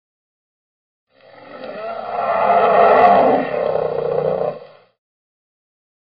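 A video intro sound effect that swells up over about two seconds and then fades out, ending a little before five seconds in.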